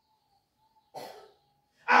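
A single short cough about a second in, in an otherwise quiet pause.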